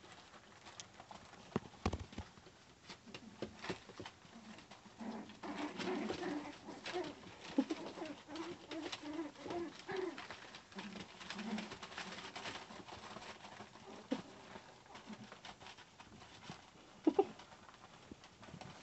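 Zuchon puppies play-fighting, with a run of soft, low, short growls and grumbles in the middle, amid scattered rustles and clicks from the newspaper bedding.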